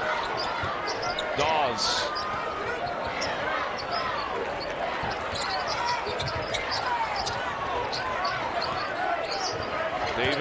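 A basketball being dribbled on a hardwood court amid the steady murmur of an arena crowd.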